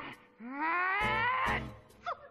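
A cartoon character's voice giving one drawn-out, cat-like wail that rises in pitch, with music underneath.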